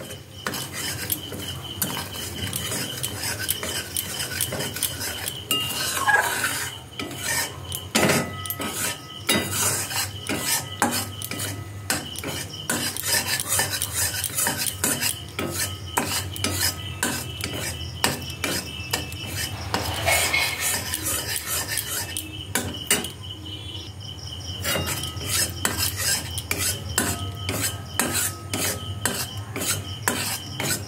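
A metal spoon scraping and clinking rapidly against an aluminium kadai as sugar is stirred while it melts and caramelizes over a gas flame.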